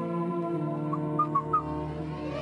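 Background score music: a sustained low drone with a few short, high notes about a second in.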